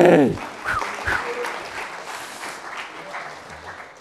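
Audience applauding in a lecture hall after a short loud voice at the start. The clapping fades out toward the end.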